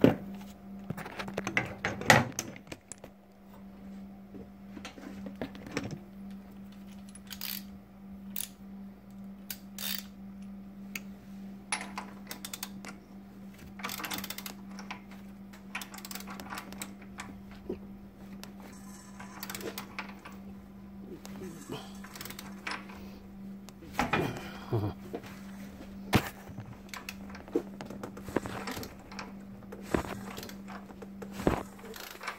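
Irregular metallic clicks and clinks of a wrench on the crankshaft bolt as a Dodge 318 V8 is turned over by hand, moving its new double-roller timing chain and sprockets to check how tight the chain runs. A steady low hum sits underneath.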